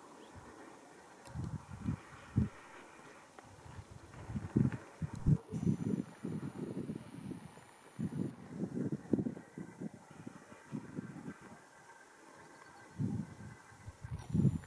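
Gusty wind buffeting the microphone: uneven low rumbles that come and go, heaviest through the middle, as weather turns stormy.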